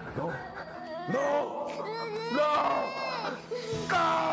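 A man crying out and sobbing in distress, his voice wavering and breaking in pitch, over a low steady tone.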